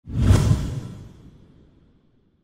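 Whoosh transition sound effect with a deep boom, hitting hard about a third of a second in and fading away over the next second and a half.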